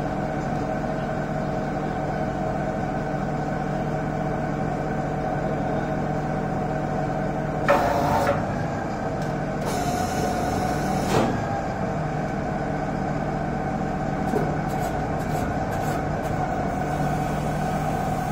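Truck-mounted DTH cum rotary water well drilling rig running steadily with a constant mechanical drone. There are two short bursts of hiss, one about eight seconds in and one about ten to eleven seconds in.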